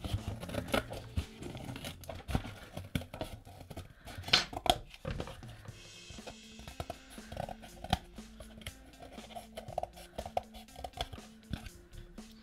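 Scissors cutting through corrugated cardboard in an irregular run of snips and crunches. Quiet background music with held notes comes in under the cutting about halfway through.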